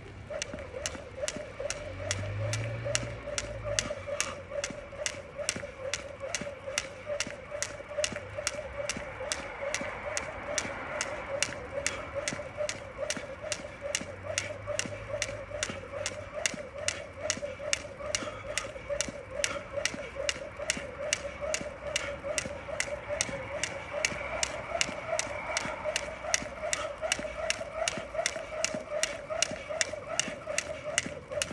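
A jump rope slapping the ground in a steady, even rhythm, two to three strikes a second, over a steady wavering tone.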